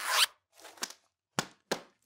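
A bag's zipper being pulled shut: one longer zip stroke followed by a shorter, fainter one, then two short sharp clicks near the end.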